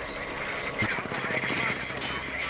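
A steady engine-like rumble and hiss, with a sharp crack a little under a second in.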